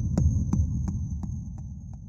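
Intro logo sound effect: a low, throbbing rumble with a regular pulse about three times a second, over a faint high steady whine, fading away.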